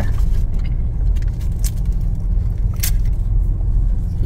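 Steady low rumble of a car's engine and road noise heard from inside the cabin as it moves slowly through traffic, with two sharp clicks about a second and a half and three seconds in.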